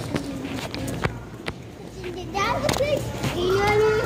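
A child's voice calling out in high, gliding tones through the second half, with no clear words. Before it come the knocks and rubbing of a handheld phone camera being jostled against clothing.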